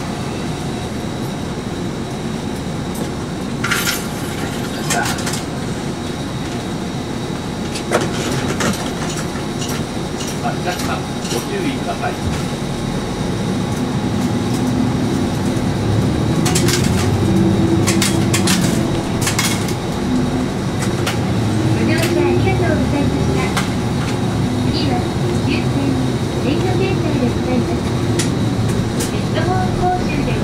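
Diesel route bus heard from inside the cabin: the engine runs steadily with clicks and rattles from the interior, then about halfway through its note grows louder and rises and falls as the bus pulls away and gathers speed.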